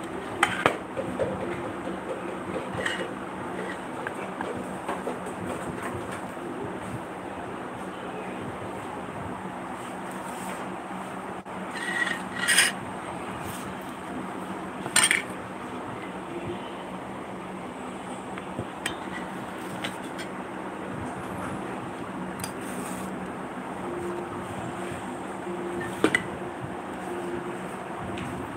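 Stainless-steel bowl and plate clinking and knocking together a handful of times as the rice is turned out and plated, the loudest clinks about twelve and fifteen seconds in, over a steady background hum.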